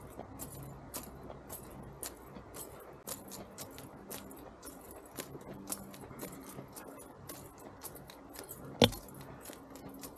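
Small metal items jingling lightly in time with walking steps on a paved path, a few short clicks a second. A single sharp knock about nine seconds in.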